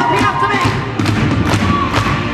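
Live pop music through a concert PA: a strong drum beat, about two hits a second, under a male lead vocal.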